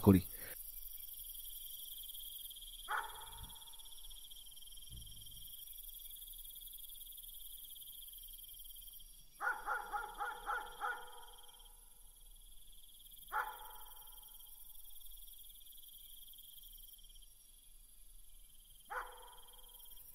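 Night ambience of crickets chirring steadily, with a dog barking faintly: one bark, then a quick run of about six barks midway, then two more single barks spaced apart.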